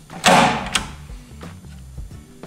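Touratech Rapid Trap latch released by pushing the lever inside the metal pannier, giving one loud clack about a quarter second in, followed by two light clicks.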